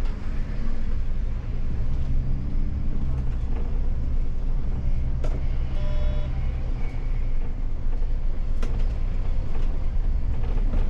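Cab of a MAN Lion's City city bus under way: steady low engine and road rumble, the engine note strengthening for a second or two about two seconds in as it pulls. A couple of sharp clicks or rattles, and a short pitched tone a little past the middle.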